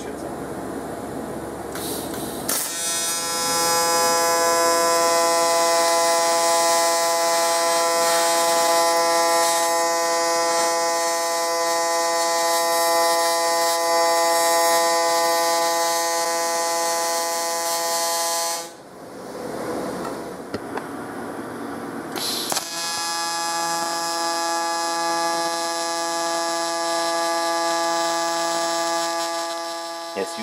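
AC TIG arc from an HTP 221 dual-voltage TIG welder buzzing steadily on 3003 aluminum plate. It comes as two long runs with a break of about four seconds roughly two-thirds of the way through.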